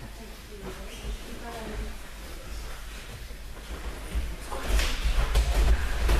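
Scuffling of two young grapplers on a tatami mat: feet shuffling and bodies and jackets bumping, with faint voices in a hall. The scuffle grows louder and busier for the last second or so as a throw starts.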